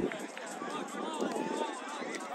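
Several distant voices shouting and calling, overlapping one another, with no clear words.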